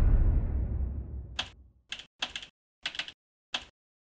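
The tail of a loud, deep boom fades out over the first second or so. Then comes a handful of irregularly spaced keystroke clicks, a typing sound effect laid under on-screen title text.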